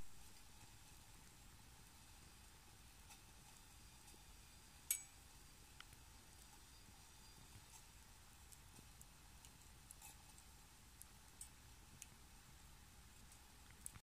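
Near silence with the faint crackle of a small wood fire: scattered soft pops and ticks, one a little clearer about five seconds in and a few more after ten seconds.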